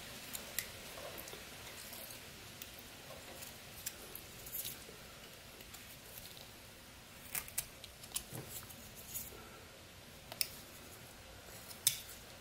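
Pocket knife blade cutting into Eastern white pine in short, separate strokes: faint, irregularly spaced slicing clicks, about a dozen in all.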